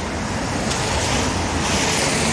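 Steady hiss of passing road traffic, cars' tyres on a wet road, mixed with wind on the microphone. The hiss grows brighter near the end.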